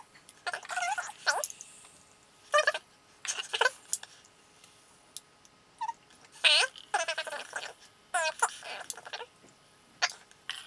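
A person's voice in short wordless bursts, about half a dozen of them, with quiet pauses between.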